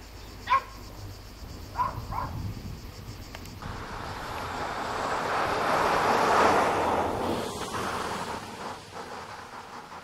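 A dog barks three times in the first couple of seconds, then the rushing noise of a passing vehicle swells to a peak about six seconds in and fades away.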